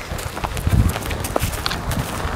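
Footsteps of people walking on a loose dirt and gravel track, with scattered crunches and scuffs and a heavy low thud on the microphone about two-thirds of a second in.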